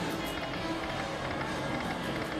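Casino background music playing overhead, steady, mixed with the general din of the slot machine floor.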